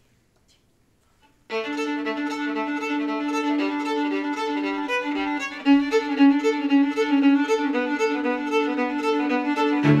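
Fiddle strikes up an Irish traditional tune about a second and a half in, after near silence. It plays a quick run of notes over a steady, held lower note.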